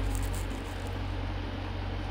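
Steady low hum of the 2018 Jeep Grand Cherokee SRT8's 6.4-litre Hemi V8 idling, even and unchanging.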